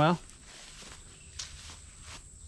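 Footsteps on grass in quiet outdoor ambience, with a brief rustle about one and a half seconds in and a faint steady high tone throughout.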